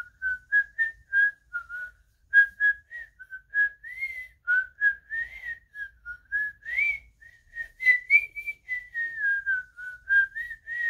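A boy whistling a Christmas tune through pursed lips, a single pure melody line of short, separately breathed notes that step up and down within a narrow range. Each note starts with an audible puff of breath.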